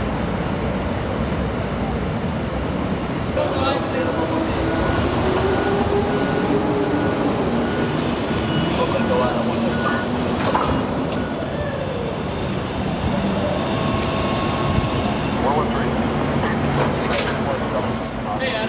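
Steady highway traffic noise with indistinct voices of people nearby. A faint repeated beep runs for several seconds in the middle.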